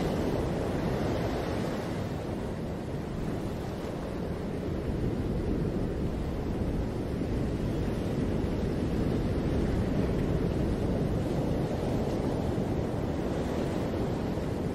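Ocean surf: waves breaking in a steady rush of noise.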